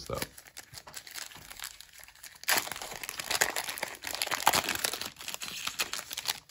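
A 1989-90 NBA Hoops trading card pack's wrapper crinkling as it is torn open, with a louder stretch of tearing and rustling about two and a half seconds in.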